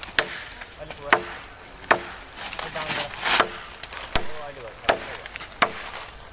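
A long blade chopping into a thin fallen wooden branch with regular strokes, about seven sharp chops a little under a second apart.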